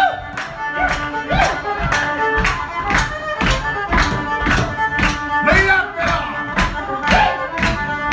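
A live folk band playing a tune, with the fiddle leading in sliding bowed notes over strummed acoustic guitar, bass guitar and a steady beat.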